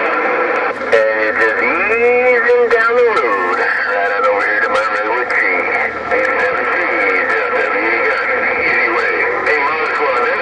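President HR2510 radio on 27.085 MHz playing received transmissions through its speaker: several faraway voices and whistling tones overlap and warble in pitch, thin and tinny. It runs steadily, getting a little busier about a second in.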